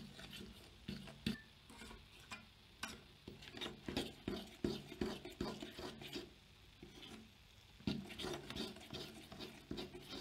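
A utensil stirring thick cake batter in a stainless steel pot, scraping and tapping against the metal sides in quick repeated strokes, with a brief lull about six seconds in.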